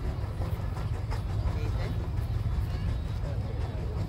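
150 HP J.I. Case steam traction engine working under heavy load, towing four dead engines up a hill at a distance: a low, steady rumble, with crowd chatter over it.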